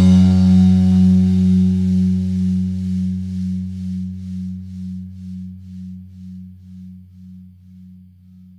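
The final chord of a punk rock song ringing out on guitar and fading away, with a slow pulse about twice a second as it dies.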